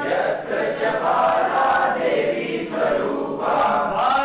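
A group of voices singing a line of a song together in unison, answering a single male voice that leads the lines before and after.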